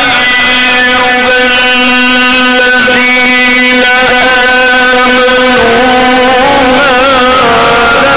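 A male voice holding long sung notes of Arabic religious chant (inshad), dropping to a lower note about halfway through, with a quick ornamented turn near the end.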